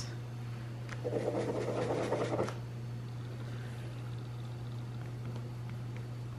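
Sharpie S-Gel pen scratching on planner paper for about a second and a half, starting about a second in, as the pen is worked to get it writing; it is skipping and not writing well. A steady low hum runs underneath throughout.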